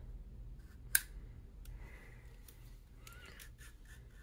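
Small metallic clicks and light scraping from the dust cover hinge rod being worked out of an AR-15 upper receiver, with one sharp click about a second in.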